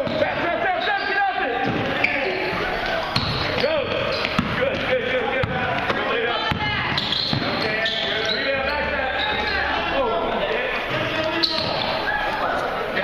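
Basketball bouncing on a hardwood gym floor during play, with players and spectators shouting, echoing in a large gym.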